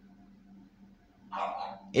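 A dog barks once, briefly, a little past the middle, after near silence with a faint steady hum.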